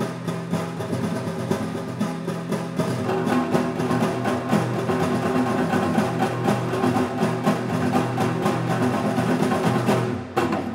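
Two nylon-string classical guitars playing a duo: held low bass notes and chords under a quick, steady rhythm of sharp percussive clicks.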